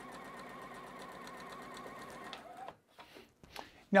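Juki sewing machine running steadily through a seam, its motor humming under a fast, even needle rhythm, then stopping about two-thirds of the way in; a few faint handling sounds follow.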